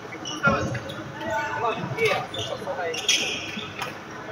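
Voices chattering in a large indoor sports hall, with several sharp smacks from badminton play.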